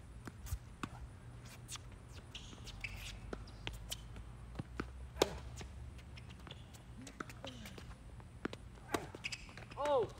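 Tennis rally on a hard court: a series of sharp pops from a tennis ball struck by rackets and bouncing on the court surface, the loudest about halfway through. A short pitched sound that rises and falls near the end.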